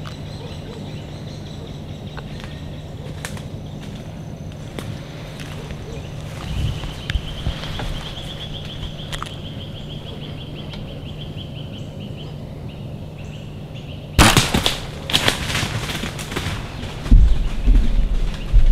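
Sudden loud clatter and rustling about fourteen seconds in, with more knocks and a low thump near the end: a hunter in a tree stand handling his compound bow and gear.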